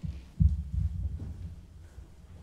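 Muffled low thumps and rumbling, with the loudest thump about half a second in and smaller ones after it, over a faint breathy hiss at the start.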